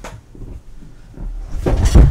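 Soft knocks and rustling from a person moving about a leather chair, ending in a loud rustle and thump near the end as he sits back down in it.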